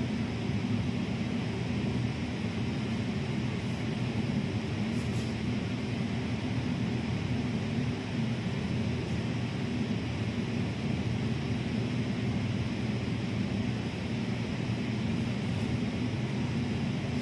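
Steady low hum with an even hiss over it, unchanging throughout, with a couple of faint brief ticks.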